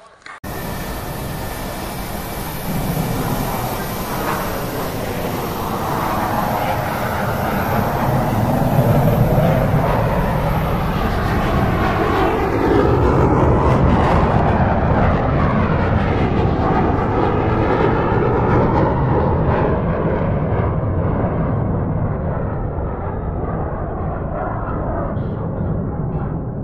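Engine noise of an aircraft passing overhead: a loud, continuous sound that swells over the first several seconds, stays strongest through the middle and slowly fades toward the end.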